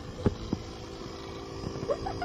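Small handheld electric air pump running with a steady hum while inflating a vinyl pool float, with two short knocks in the first second.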